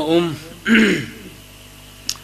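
A man clears his throat into a microphone: a short voiced sound at the start, then a rasping clear that falls in pitch about two-thirds of a second in, over a steady mains hum.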